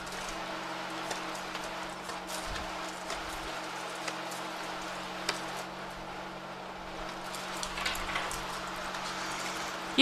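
Tarot cards being shuffled and handled: faint rustling and light scattered clicks over a steady low hum.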